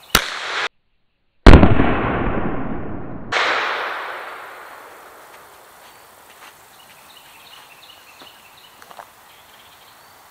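A single .45 Long Colt shot from a Taurus Judge revolver, fired into a soft ballistic backpack panel. A sharp crack comes right at the start and the sound cuts out for a moment. Then a loud burst about a second and a half in dies away over the next few seconds.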